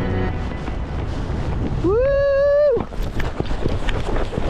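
A low, fast pass by a Zivko Edge 540 aerobatic airplane, heard as a loud, steady engine roar. About two seconds in, a high tone rises, holds for under a second and then drops away sharply.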